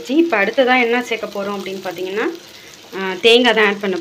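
A voice in two long stretches, over the low sizzle of ivy gourd frying in masala in a steel pot.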